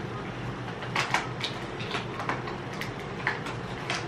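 Small, irregular clicks and crackles of medicine packaging being handled and opened by hand, over a steady low hum.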